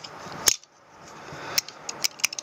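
Bonsai pruning scissors snipping: one sharp metallic snip about half a second in, then a couple of lighter clicks of the blades near the end.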